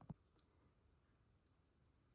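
Near silence with one short, soft click just after the start and a few much fainter ticks later.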